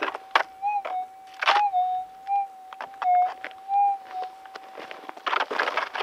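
Metal detector's steady threshold hum through its speaker, with several brief swells and slight wobbles in pitch but no firm target tone: the signal has faded out after the ground was scraped. A few sharp clicks of the coil knocking the gravel come in the first second and a half, and gravel scrapes near the end.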